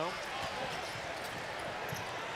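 A basketball being dribbled on a hardwood court, a few faint bounces, over the steady noise of an arena crowd.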